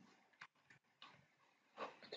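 Near silence: room tone with a few faint, brief noises.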